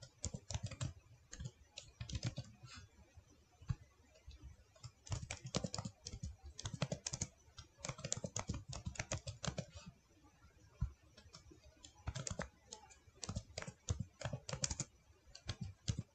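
Computer keyboard typing in several short bursts of keystrokes with brief pauses between them.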